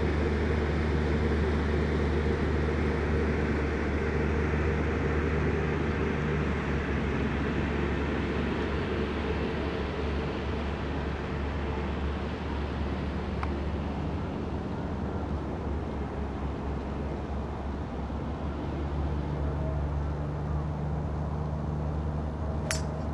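Steady low hum and rumble of background noise, with a single faint click about halfway through.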